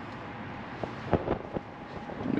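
Steady hiss of a truck's cabin ventilation fan with the engine off, with a few soft taps of a finger on the dashboard touchscreen about a second in.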